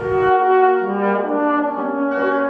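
Trombone and wind quintet playing classical music together: several held notes sound at once, with the notes changing every half second or so.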